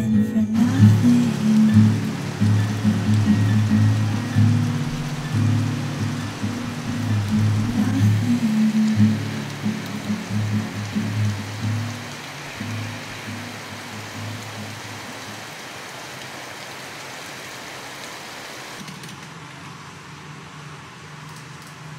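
Heavy rain falling steadily, an even hiss of rain on pavement and leaves. Soft background music with low notes plays over it and fades out about two-thirds of the way through, leaving the rain alone.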